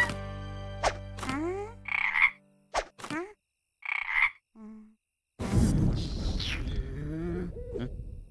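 Cartoon frog-croak sound effects: two short croaks, then a longer, louder, low rough croak in the second half. Quick whistle-like pitch slides and a music cue end about two seconds in.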